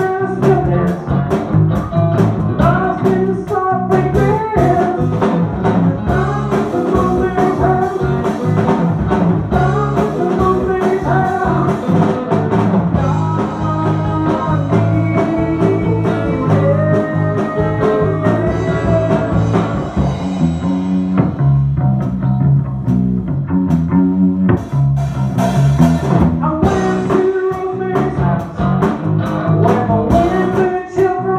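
Live rock band playing a blues-rock song on electric guitar, bass guitar and drum kit, with a male lead vocal.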